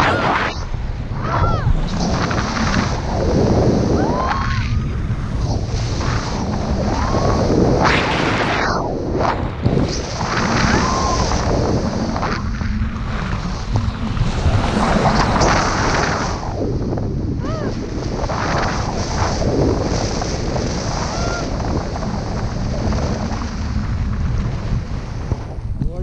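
Loud, gusty wind rushing over the camera's microphone as a tandem paraglider flies through the air, with brief voice sounds now and then.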